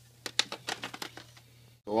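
A quick run of light, sharp clicks and taps from small objects being handled, over a steady low hum, with a single spoken word at the very end.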